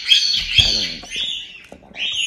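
Hand-reared parrot chicks giving scratchy begging calls in quick bursts, thinning out near the end.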